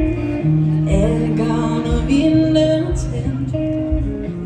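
Live band playing a pop song, with bass notes held under a steady drum beat and guitar.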